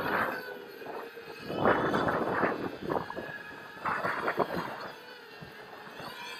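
Racerstar BR2205 2600KV brushless quadcopter motors with 5-inch two-blade props running with a steady whine. There are loud rushes of propeller wash at the start, about two seconds in and about four seconds in, as the throttle is pushed while the quad strains under a load it cannot lift.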